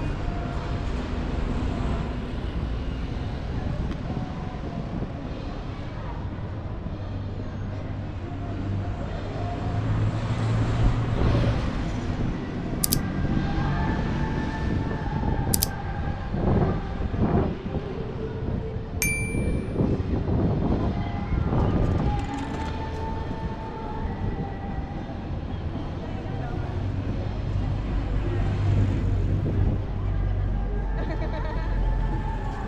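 City street ambience: a steady rumble of traffic under the chatter of passers-by, with two sharp clicks about halfway through and a short bright ding a little later.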